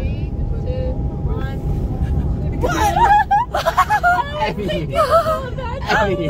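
Steady low rumble of a coach bus on the move, heard from inside the passenger cabin. Several women talk over one another and laugh over it from about two and a half seconds in.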